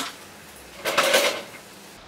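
Mopping a tiled floor with a string mop: a sharp knock at the start, then a longer scraping swish about a second in.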